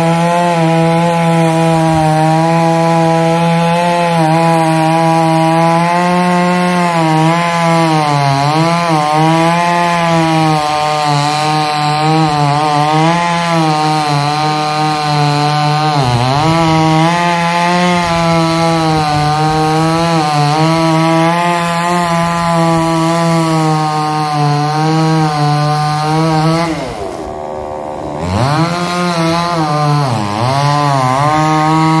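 Chainsaw running at high revs while cutting into the base of a standing pine trunk, its pitch sagging and recovering again and again as the chain bites into the wood. Near the end it drops back toward idle and goes quieter for a moment, then revs up again.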